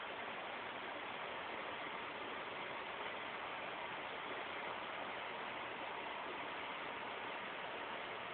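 Steady, even hiss with nothing else distinct: the background noise of the recording.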